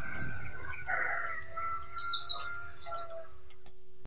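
Birds chirping and calling, with a quick run of high, downward chirps about two seconds in and a few held whistled notes below them.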